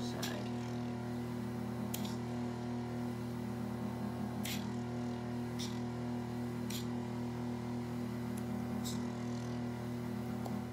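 Vacuum pump of a microdermabrasion machine running with a steady hum while the suction wand is worked over the skin, with several short clicks along the way.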